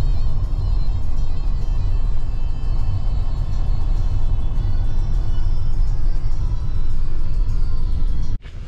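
Steady low rumble of road and engine noise inside a moving Lexus car's cabin, with music playing over it.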